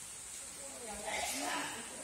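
Distant voices of several people talking over a steady high hiss, with a brief rush of noise about a second in.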